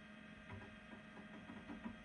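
Faint, steady electrical hum of a running Apple Macintosh SE, with a few soft clicks in the second half.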